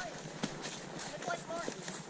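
Horses walking on a trail deep in dry fallen leaves: a steady rustle and crunch of hooves through the leaves, with one sharper click about half a second in.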